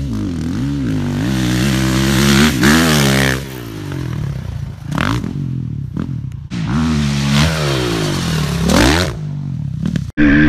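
A 450cc four-stroke motocross bike ridden hard at full throttle. Its engine note climbs in pitch as it accelerates, drops away a little past three seconds in, then climbs again toward the end as it runs at the jump.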